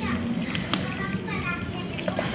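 Kittens chewing and tearing at a fried fish, with a few sharp chewing clicks. A high-pitched voice makes several short sounds through the second half.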